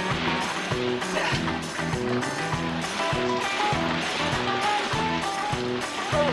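Background music score with a steady bass pattern of about two notes a second and short melodic phrases above it.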